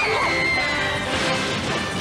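Film-trailer soundtrack: music mixed with action sound effects, including a crash, and a high held tone that glides slightly down over the first second and a half.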